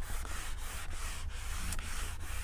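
A handheld whiteboard eraser rubbing marker writing off a whiteboard: a scratchy hiss in several back-and-forth wiping strokes with short breaks between them.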